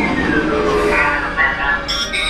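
Dark-ride sound effects: a falling electronic whine in the first half second over a steady low rumble, with ride voices in the mix.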